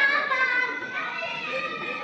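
A large audience of young children calling out together, many high voices overlapping, loudest at the start and slowly dying down.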